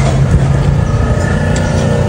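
Noodles being slurped from a bowl of soup over a loud, steady low mechanical hum.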